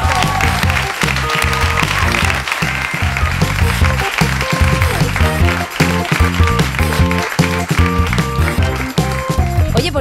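Radio show opening theme music with a steady beat and repeating bass line. Applause over the first few seconds.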